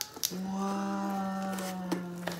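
A person's long, drawn-out "ooooh" of wonder, held on one steady pitch, as the cardboard box is opened, with a few light clicks and rustles of the box flaps and chip bags.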